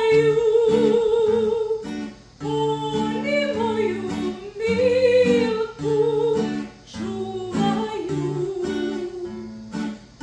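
A woman singing a Serbian old-town song (starogradska pesma) live, holding long notes with vibrato, to a strummed acoustic guitar. Her voice drops out near the end, leaving the guitar.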